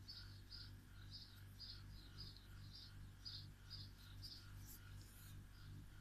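Near silence: faint room tone with a steady low hum and soft, repeated high-pitched chirps, about two a second.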